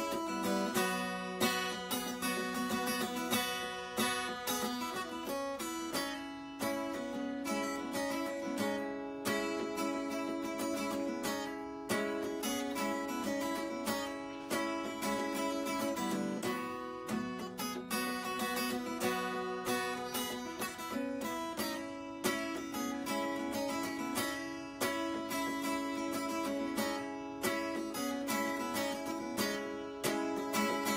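Acoustic guitar played solo: a continuous run of picked and strummed notes with no singing.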